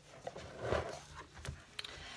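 A large book being handled and moved: a soft rustle of paper and cover, then a light knock about one and a half seconds in.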